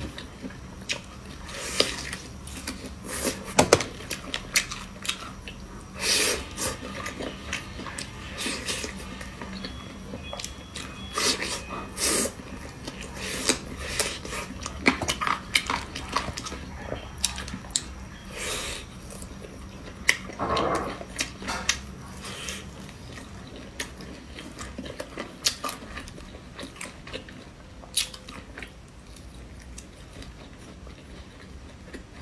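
Close-miked eating: chewing and biting skewered grilled meat, with many irregular wet mouth clicks and smacks.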